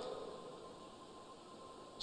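Faint room tone: a low hiss with a thin steady hum, the last of a man's voice dying away in the hall's reverberation at the start.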